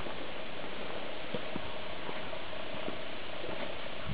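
Steady outdoor hiss from a handheld camera's microphone, with a few faint footsteps on grass and gravel and a faint steady tone.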